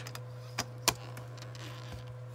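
A few light clicks, the sharpest just under a second in, from the blade slider of a small hand paper trimmer being worked along its rail over cardstock, with a steady low hum underneath.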